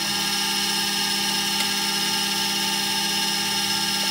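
Makera Carvera Air desktop CNC mill running its spindle with a 0.2 mm 30-degree engraving bit, cutting tracks into copper-clad PTFE board: a steady whine of several fixed tones over a hiss.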